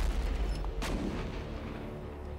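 Artillery-style sound effect in a news show's title sting: a deep boom hits at the start and keeps rumbling, with a sharp crack a little under a second in.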